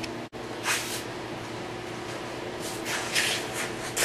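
A steady background hum, broken by a momentary cut-out just after the start, with a few short rustling noises about a second in and again around three seconds.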